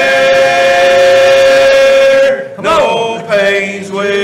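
A group of men singing together, holding one long note for about two seconds, then a brief break and the next phrase beginning with a sliding note.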